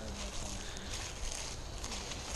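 Footsteps crunching and rustling through dry leaf litter, a faint, uneven patter of small crackles.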